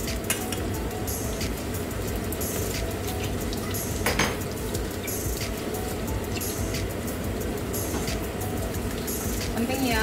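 Metal utensils clinking and scraping against stainless-steel pans and a mixing bowl during stirring, with a sharper clink about four seconds in, over the steady sizzle of food cooking on the hob.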